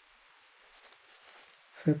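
Faint scratching of a stylus writing on a drawing tablet, with a voice starting just before the end.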